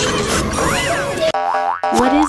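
Cartoon fight sound effects: a dense, noisy clatter with one tone that rises and falls. About a second and a half in, it gives way to a springy, wobbling boing.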